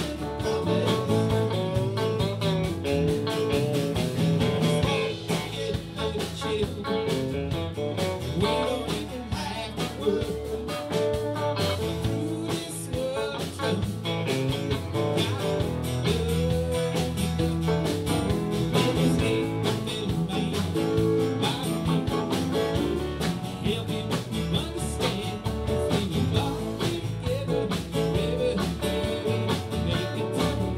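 Live band playing: electric and acoustic guitars over bass and a drum kit, with a steady beat.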